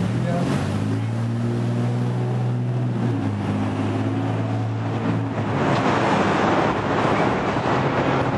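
A vehicle engine running in the street with a low, steady hum for about five seconds, then a louder rushing noise of traffic and wind for the last few seconds.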